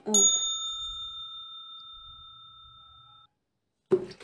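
A single bell-like ding: one bright ring that fades over about three seconds and then cuts off abruptly.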